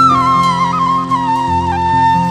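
Bamboo transverse flute playing a slow, ornamented melody that falls from a high note in the first half second and steps gradually lower. Steady sustained band chords and bass run underneath.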